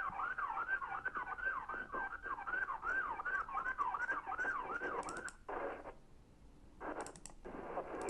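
An electronic siren sweeping rapidly up and down, about three times a second, that cuts off about five seconds in, followed by a few short bursts of noise.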